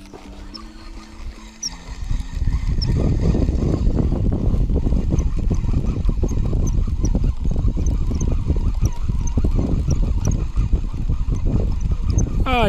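A few notes of background music, then from about two seconds in a loud, uneven rumble of wind buffeting the microphone, with faint high ticks above it.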